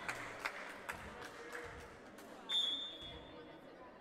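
Referee's whistle blown once, a steady high tone held for about a second and a half, signalling the serve, over the murmur of a gym hall. A few faint knocks come before it.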